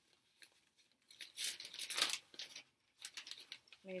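Rustling of a flimsy fabric travel bag being handled, a few rough bursts, busiest and loudest from about one to two seconds in.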